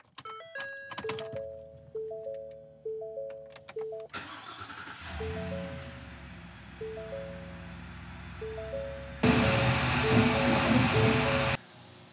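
Ford F-350 dashboard chimes, a quick rising run of tones and then a three-note chime repeating about once a second. The truck's engine starts about four seconds in and runs under the chimes, much louder for a few seconds near the end before dropping away.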